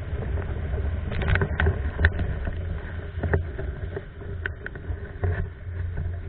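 Windsurf board, a Starboard Hypersonic, planing fast over choppy lake water: a steady low rumble of wind and hull on the water, broken by short sharp splashes of spray.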